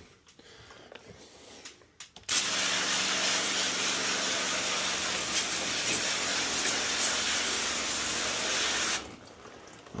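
A pressure washer sprays water onto the indoor evaporator coil of a Mitsubishi ductless mini split, rinsing off dirt and cleaner. It is a loud, steady spray with a low hum underneath that starts suddenly about two seconds in and cuts off about a second before the end.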